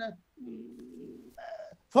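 A man's drawn-out hesitation hum, held at one low pitch for about a second, followed by a short voiced sound just before speech resumes.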